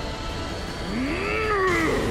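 A cartoon character's drawn-out yell that rises and then falls in pitch, starting about a second in, over a steady low rumble of action sound effects.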